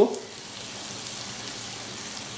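Hot oil sizzling steadily in an aluminium kadhai as a tempering of curry leaves, green chillies and whole spices fries in it.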